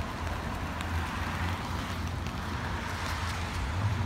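Steady outdoor street ambience: an even hiss over a low rumble, with no distinct events.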